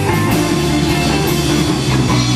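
Rock music, a band with guitar and drums, playing steadily.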